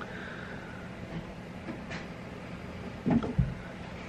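Steady low hum of room background noise, with a brief soft thump about three seconds in.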